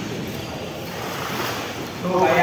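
Pool water splashing and sloshing as a child swims with kicking strokes, a steady wash of churned water.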